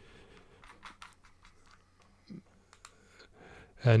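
Faint, scattered small clicks and scrapes of a vape tank's metal threads being screwed by hand onto a box mod's 510 connector.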